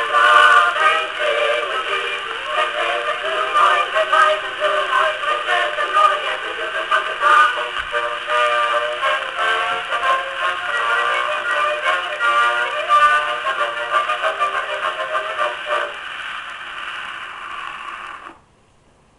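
A 1921 Victrola VV-VI acoustic phonograph plays a 1903 Standard disc record. The narrow-band music comes with surface hiss and fades out near the end.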